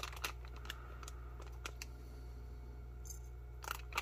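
Faint ticks and light crinkles of a plastic MRE flameless ration heater pouch being held and handled, over a low steady hum, with a couple of slightly louder clicks near the end. No fizzing comes from the heater: its reaction has not got going yet.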